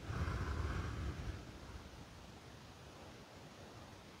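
One audible breath out, about a second and a half long, blowing across a close microphone with a low rumble and a soft hiss.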